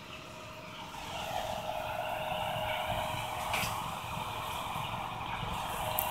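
Pelonis evaporative (swamp) cooler's fan running at its low speed setting: a steady rush of air with a steady hum, growing a little louder about a second in.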